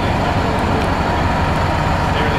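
Steady rumble of city street traffic noise, with no distinct events.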